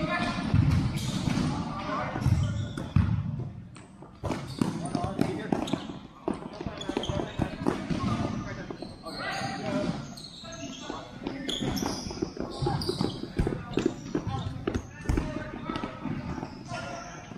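Futsal ball being kicked and bouncing on the court, repeated sharp knocks at irregular intervals, mixed with indistinct shouts of players in a large hall.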